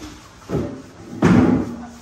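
Two heavy thumps about three-quarters of a second apart, the second louder and ringing on briefly.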